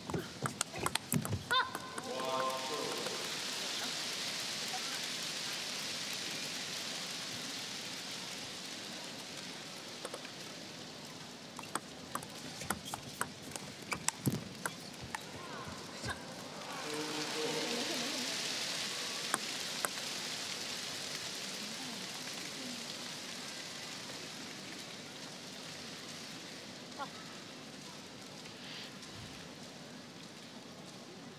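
Table tennis ball clicking off bats and table in quick irregular taps during rallies, at the start and again in the middle. A short shout comes just after each point is won, about two seconds in and again about seventeen seconds in, and each time applause follows and fades away over several seconds.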